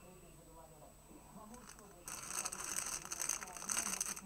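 Thin plastic retail bag crinkling loudly as it is handled and torn open by hand, starting about halfway in.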